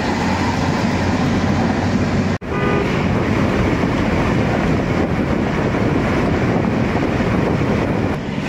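Steady road and engine noise of a moving car heard inside the cabin, broken once by a sudden gap about two and a half seconds in.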